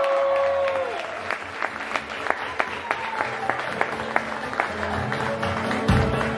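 Wedding guests applauding, with a held high cheer fading out in the first second. Scattered claps run on as music starts up underneath and grows louder toward the end.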